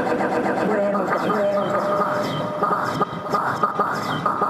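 Electronic music from a modular synthesizer set. Looped, chopped voice fragments sit over a dense texture of held tones, with a run of fast clicks from about a second in.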